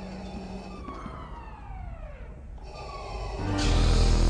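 Film soundtrack: a wailing alarm tone falling in pitch and repeating about every second and a half. Near the end a red lightsaber ignites and settles into a loud, low hum.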